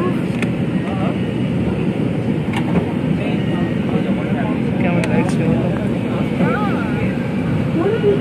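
Crowd voices over a steady rumble on an underground metro platform, with a metro train standing at the platform while passengers board.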